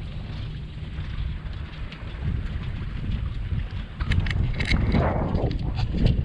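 Wind buffeting the microphone aboard a small sailboat under sail, a steady low rumble that grows louder over the last couple of seconds, with a few short knocks or splashes near the end.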